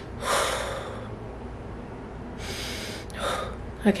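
A woman blowing out two long, hard breaths through pursed lips, one right at the start and another about halfway through, while fanning herself with her hand.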